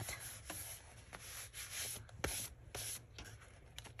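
Hands rubbing and smoothing paper flat onto a glued journal cover: soft brushing of skin on paper, with a few light taps and rustles.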